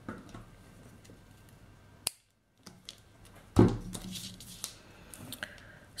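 Scissors cutting through faux-suede (Alcantara) cord: one loud snip about three and a half seconds in, with a sharp click shortly before it and light handling clicks after.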